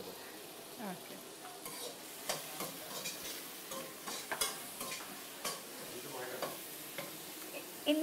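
Food frying in a wok on a gas stove while a metal spoon stirs it: a steady sizzle with scattered clicks and scrapes of the spoon against the pan.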